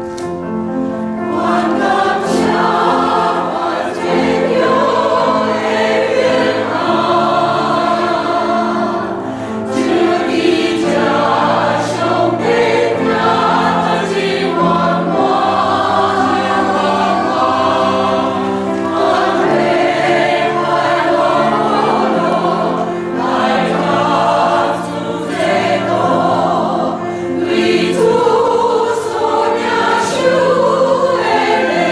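A choir singing in long held chords.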